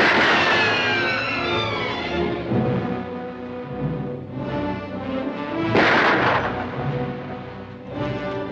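Dramatic orchestral film score: a loud sudden hit at the start followed by falling lines over about two seconds, then a second sharp, loud burst about six seconds in over sustained chords.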